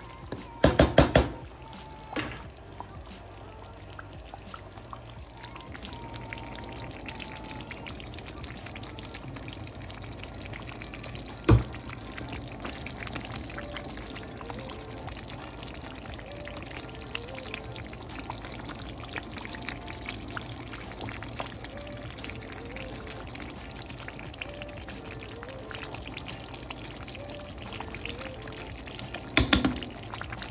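Thick brown gravy with pork ribs in a skillet, bubbling at a slow simmer with a steady low bubbling. A quick cluster of clicks comes at the start, and a single sharp knock about eleven seconds in.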